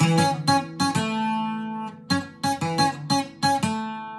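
Acoustic guitar playing a single-note lead fill in A at full tempo: quick plucked notes, a note held for about a second, another quick run, and a note left ringing near the end.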